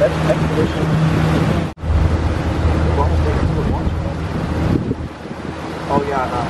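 Small boat's motor running steadily under way, a low even hum, with wind buffeting the microphone. The sound cuts out for an instant a little under two seconds in.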